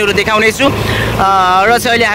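People talking inside a moving vehicle, with one longer, drawn-out voiced sound about halfway through, over the steady low running noise of the vehicle.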